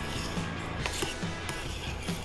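Soft background music, with a few faint clicks of metal tongs against a stainless steel pan as a creamy sauce is stirred.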